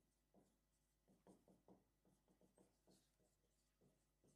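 Very faint marker strokes on a whiteboard: a run of short scratchy strokes as someone writes.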